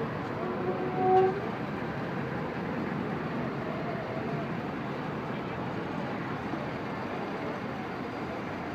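Steady street traffic and crowd noise, with a short vehicle horn honk about a second in.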